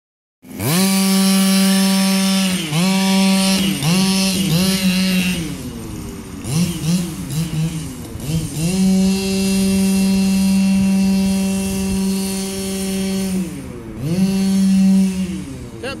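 Losi DBXL 1/5-scale buggy's small two-stroke petrol engine running at high revs while towing a child on a sled through snow. It holds a steady pitch for long stretches, with the throttle dropping off and picking back up several times, including a longer dip about five and a half seconds in and a brief one near the end.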